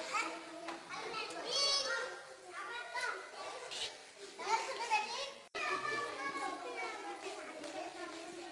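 A group of children talking and calling out in high voices, with overlapping chatter. The sound breaks off for an instant about five and a half seconds in.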